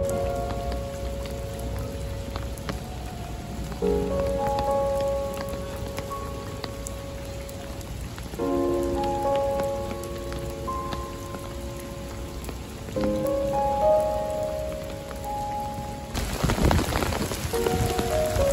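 Rain falling steadily on wet stone paving and puddles, the drops ticking through an even hiss, under soft background music whose sustained chords change every four or five seconds. Near the end the rain grows louder.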